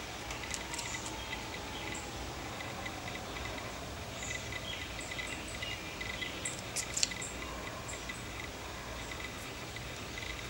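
Steady faint room hum with a few light clicks, the sharpest about seven seconds in.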